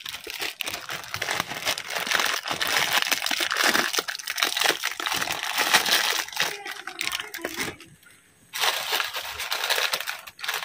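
Plastic instant-noodle packet crinkling as it is handled over a saucepan, with a short break about eight seconds in.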